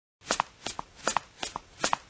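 Footsteps sound effect for a walking toy figure: five pairs of quick clicks, a pair about every 0.4 seconds.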